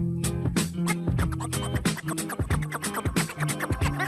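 A DJ scratching on turntables over a music track with a bass line, cutting the sound in rapid short stutters on the mixer.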